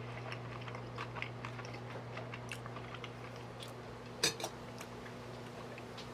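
A table knife clinking on a small glass sauce dish and a china plate, with one sharper clink about four seconds in, among soft mouth clicks from chewing. A steady low hum runs underneath.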